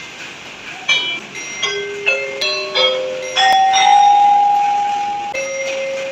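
Single notes struck with mallets on a low xylophone-type instrument with wooden bars, played slowly and unevenly, each note ringing on; one note about halfway through rings for about two seconds.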